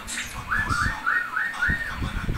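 A quick run of five short, high whistled chirps, about four a second, starting about half a second in.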